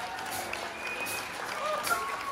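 Concert audience applauding and cheering at the end of a song, with a few short whoops and shouts over the clapping.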